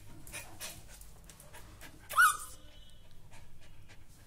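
Small dog panting in quick, even breaths, with one short, loud, high-pitched yelp about two seconds in.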